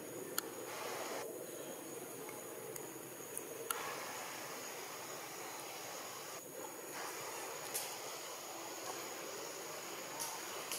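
Outdoor forest ambience: a steady high-pitched insect drone over a soft hiss, with a few faint clicks.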